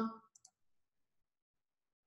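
Two quick, faint computer mouse clicks about half a second in, made while working charting software; otherwise near silence.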